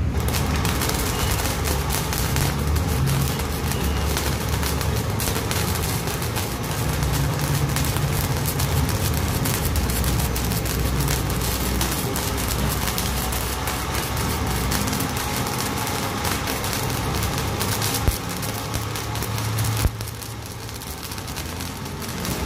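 Flux-core wire welding arc, fed by a homemade drill-driven wire feeder on an MMA stick welder, crackling and sputtering steadily over a low hum. Two sharp pops come near the end, and the arc is a little quieter after the second.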